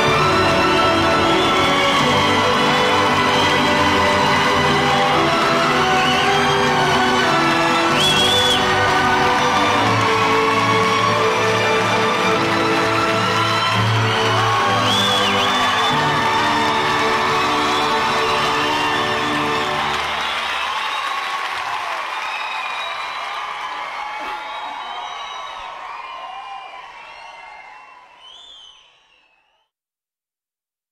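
Orchestral music with an audience cheering, whooping and applauding over it, fading out over the last third to silence.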